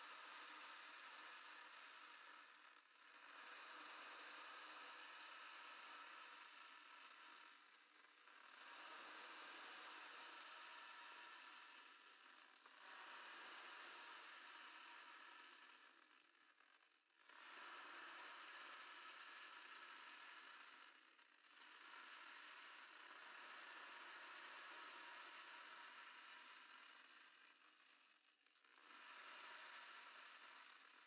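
Ocean drum tilted slowly back and forth, the small beads inside rolling across the drumhead in a soft wash like waves on a shore. The sound swells and fades in slow waves every few seconds.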